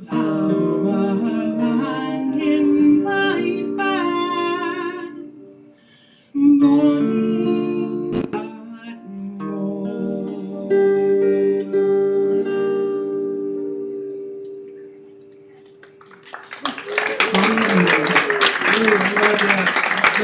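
A woman singing with acoustic guitar and fiddle accompaniment; the song ends on a long held note that fades away. In the last few seconds the audience breaks into applause, with a few voices calling out.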